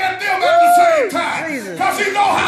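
A preacher shouting, with a long held cry about half a second in, other voices calling out over and after it.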